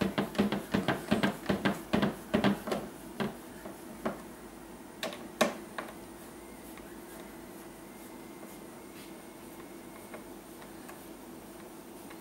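Hands handling a freshly vacuum-formed plastic sheet on its wooden frame: a rapid run of clicks and crackles, about three or four a second, then two knocks. After that only a faint steady hum.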